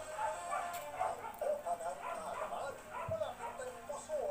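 A dog, likely small, whimpering and yipping in many short, high, wavering cries.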